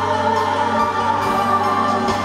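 Live band music from a slow ballad: bowed cellos and electric guitar over drums, with backing singers holding long notes.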